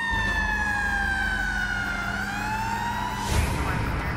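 Ambulance siren wailing in one slow cycle: the pitch slides down for about two seconds, then climbs back up, over a low steady hum. A short burst of noise comes a little past three seconds in.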